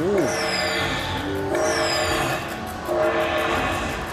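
Slot machine bonus-round sound effects: held electronic chime chords that step through a few pitches while the win total climbs, with two high falling swooshes about a second apart as a fireball collects coin values.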